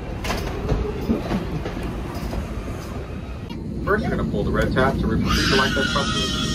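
Steady low rumble of a jet bridge and airliner cabin during boarding, with a few knocks in the first second or so. A voice comes in about four seconds in and carries on.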